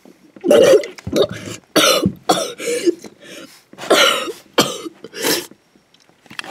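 A boy coughing repeatedly, about eight harsh coughs in an irregular string.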